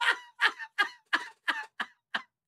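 A man laughing hard: a run of short, breathy bursts about three a second that get shorter toward the end.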